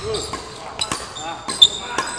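Badminton racket strings striking shuttlecocks in a fast net-tapping drill: a run of sharp hits, the loudest about one and a half seconds in.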